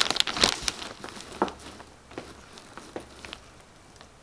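French tulle netting rustling and crinkling as it is handled. Dense crackling in the first second, then a few separate light ticks that thin out.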